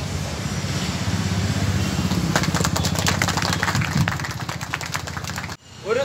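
An engine running steadily at idle, a low pulsing rumble, with a run of short clicks through the middle; the sound cuts off abruptly shortly before the end.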